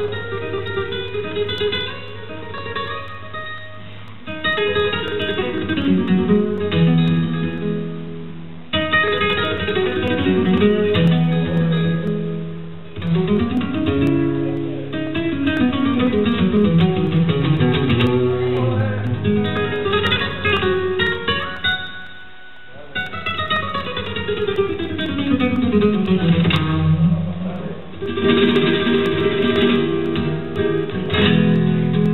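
Solo flamenco guitar, plucked and picked, with long descending runs of notes and short breaks about nine seconds in and again past twenty seconds.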